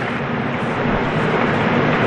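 Steady room noise of a large, crowded courtroom, with no speech, slowly growing a little louder.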